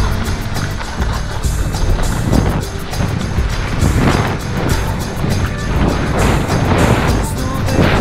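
Song playing with a steady beat and heavy bass, with no singing heard.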